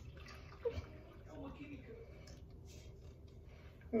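Flan custard batter being poured from a mixing bowl into a metal flan pan: a faint, soft liquid pour.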